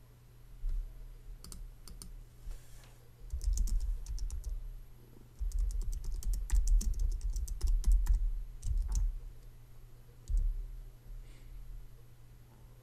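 Computer keyboard typing and clicking in irregular bursts, two longer runs in the middle, with dull low thuds under the keystrokes and a steady low hum behind.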